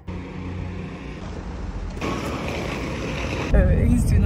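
A parked people-carrier van's engine idling with a steady low hum. About three and a half seconds in, a much louder low rumble takes over: the van driving, heard from inside the cabin.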